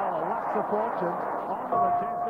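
A man's voice speaking indistinctly, with a steady held tone coming in near the end.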